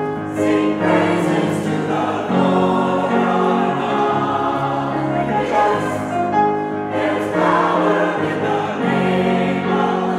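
Mixed folk and gospel choir singing in harmony, the voices holding sustained chords that change every second or two.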